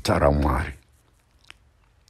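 A man's preaching voice, a short utterance that ends within the first second, then a pause broken by a single faint mouth click.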